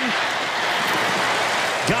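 Large stadium crowd cheering, a steady wash of noise with no break.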